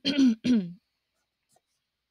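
A woman clearing her throat: a short two-part voiced "ahem" in the first second.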